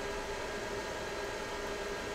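Steady background hiss and hum, with one faint steady tone and nothing starting or stopping: machine or room noise such as a fan.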